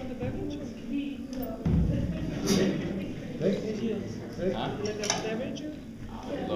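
Indistinct talking in the room, with a low thump a little under two seconds in and a couple of sharp metallic clinks later on.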